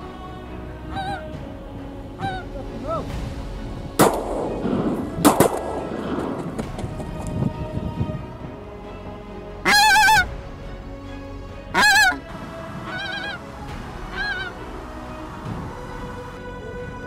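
Pink-footed geese honking as they come in over the decoys. About four seconds in, two shotgun shots ring out a little over a second apart. Two louder, longer bursts of honking follow around ten and twelve seconds.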